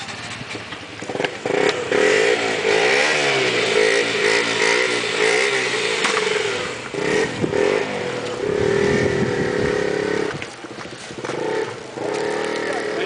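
Motorcycle engines running close by, rising and falling in pitch as they are revved, loud from about a second in with a couple of brief dips.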